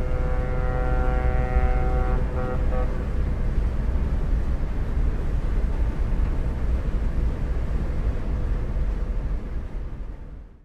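Steady low engine rumble, with a pitched whine over it for the first three seconds or so that then fades out.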